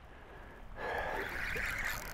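A person breathing out hard: a long, breathy huff without voice that starts about a second in.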